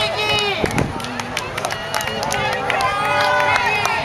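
A crowd of onlookers chatting, several voices overlapping at once, with scattered sharp clicks among them.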